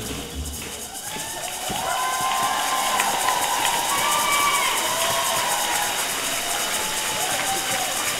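Cha-cha dance music stops right at the start. Then an audience cheers, a steady wash of crowd voices that builds about a second and a half in and holds.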